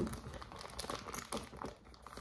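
Clear plastic wrapping of a wax melt crinkling faintly as it is handled, in short scattered crackles.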